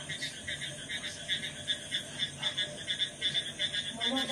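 A chorus of frogs calling, with a steady stream of rapid, high-pitched repeated croaks.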